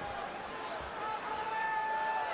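Arena crowd noise at a boxing match, with one long high note from someone in the crowd held from about a second in, and a few soft low thumps.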